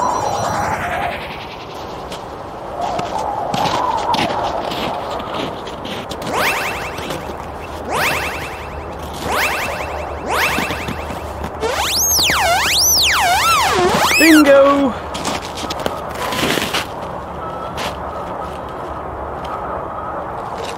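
Electronic sci-fi metal detector sound effect. A rising power-up sweep opens it, followed by a series of repeated scanning sweeps. About twelve seconds in, a warbling tone swings fast up and down in pitch and then falls away.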